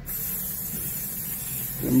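Aerosol spray can of clear lacquer hissing steadily as a coat is sprayed onto a car wing panel, the spray starting abruptly at the beginning.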